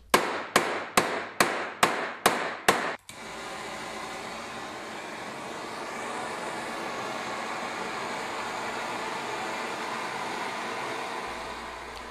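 A dimpling hammer striking a copper sheet, about eight sharp blows in the first three seconds, embossing the surface with small dimples. Then a steady hiss from a handheld gas torch heating the copper to oxidize its surface.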